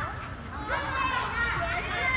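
Young children's high-pitched voices calling out and talking as they play.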